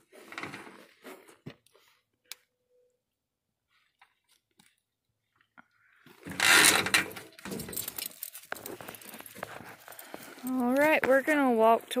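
Rustling and scattered clicks from handling close to the microphone, with one loud rustle lasting about a second, about six seconds in. A person's voice comes in near the end.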